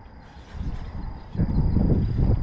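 Low rumbling wind noise buffeting the microphone, growing louder a little over halfway through.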